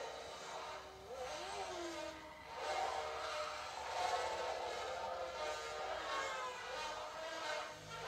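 Car-chase film soundtrack played through a television speaker and picked up in the room: vehicle sound effects with several wailing tones gliding up and down, like police sirens, mixed with the film's score.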